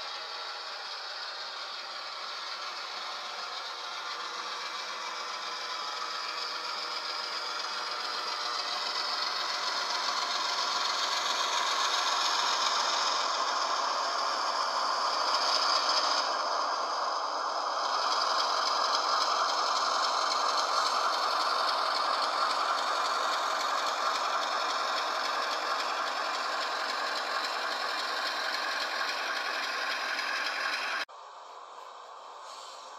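HO scale model diesel locomotive running along the track, a steady mechanical rattle of its motor, gears and wheels on the rails. The sound grows louder over the first dozen seconds as it comes close, then holds.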